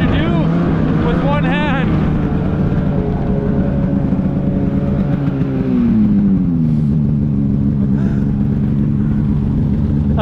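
Polaris 9R two-stroke snowmobile engine running steadily at trail speed, its pitch falling as the throttle eases off about five to six seconds in, then holding at the lower speed.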